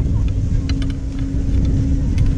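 Chairlift ride noise: a steady low rumble with a constant hum and a few light clicks.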